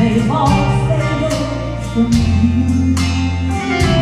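A woman singing a gospel song into a microphone over a steady instrumental accompaniment with strummed guitar and bass.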